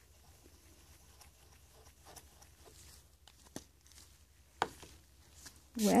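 Faint rustling and light taps of gloved hands handling a Gelato crayon stick and a small spray bottle on a craft mat, with a couple of sharper clicks in the second half.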